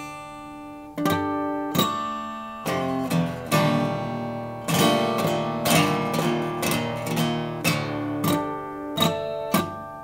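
Taylor PS16ce Grand Symphony acoustic guitar, with a spruce top and cocobolo back and sides, played fingerstyle. Single plucked chords ring out at first, then a busier passage of strummed and picked notes in the middle, then separate ringing chords again near the end.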